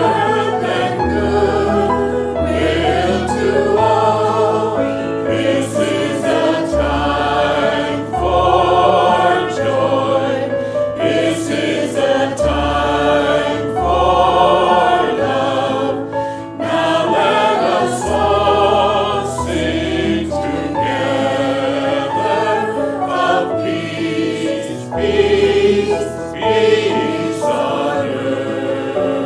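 A choir singing a slow sacred song, with wavering sustained notes over instrumental accompaniment that moves through low bass notes held about a second each.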